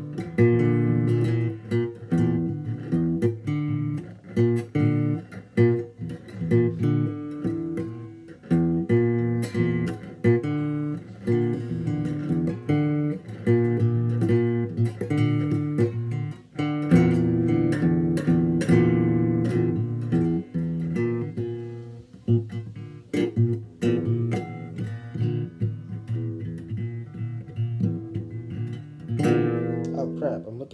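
A guitar played continuously, with notes and chords picked in a loose, wandering line. Near the end a last chord is strummed and left to ring.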